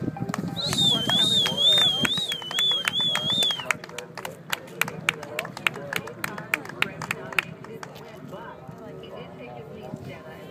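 A high warbling whistle of approval for about three seconds near the start, with one person's hand claps about three or four a second. The claps stop about two-thirds of the way through, leaving quieter background sound. This is applause for a horse and rider finishing their round.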